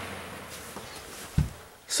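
A 9-inch Massey box fan spinning down after being switched off: its motor hum and air noise fade away steadily. There is one brief low thump near the end.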